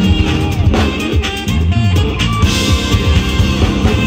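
Live band playing a pop-rock song through the stage PA, with drum kit, bass guitar, electric guitar and keyboard.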